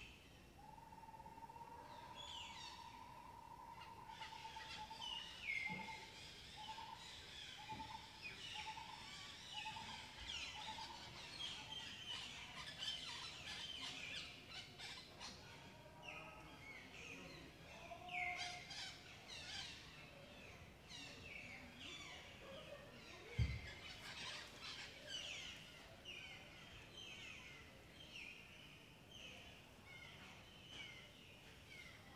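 Faint chorus of forest birds: many short, downward-sweeping chirps overlapping throughout, with a lower trilling note held for a few seconds near the start that then breaks into a run of short repeated notes. A single dull thump about two-thirds of the way through.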